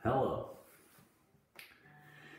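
A sharp snap-like click, then a brief wordless sound from a man's voice lasting about half a second. A fainter click comes about one and a half seconds in, followed by a low steady hum.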